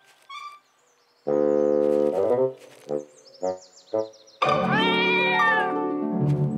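Cartoon sound effects over music: about a second in, a held brass-like note that sags in pitch at its end, then three short blips. Near the end comes a long, rising-and-falling cartoon cat yowl.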